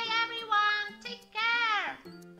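A high, squeaky pitched-up cartoon voice for the mouse puppet: three drawn-out calls, the last sliding down in pitch. Light background music plays underneath.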